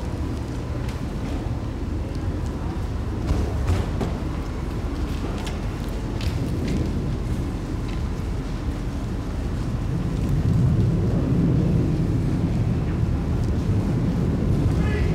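Outdoor ambience: a steady low rumble that grows a little louder near the end, with scattered sharp clicks, most of them in the first half.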